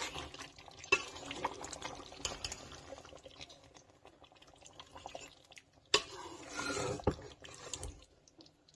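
A metal spoon stirring a thick tomato sauce with meat pieces in a steel pot: wet stirring sounds with scattered clinks of the spoon against the pot, a sharper clink about a second in and a louder one near six seconds.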